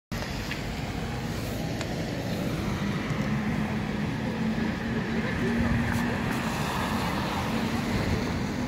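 Steady city street traffic noise: vehicle engines and tyres on a wet road, with a low engine hum holding steady through most of it.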